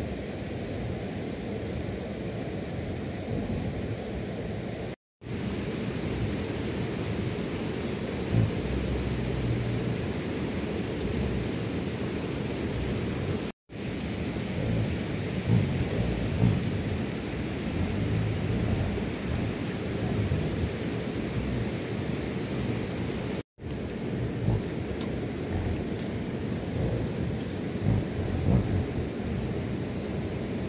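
A steady low outdoor rumble with a few louder thumps, broken by three brief dropouts to silence where the picture cuts.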